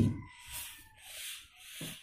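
Pencil and plastic ruler rubbing across drawing paper: three short, soft scratching strokes, each about half a second long.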